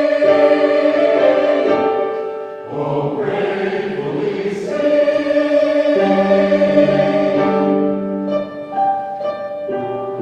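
A church choir singing a hymn in parts, with long held chords. About eight seconds in the voices stop and a piano plays on alone.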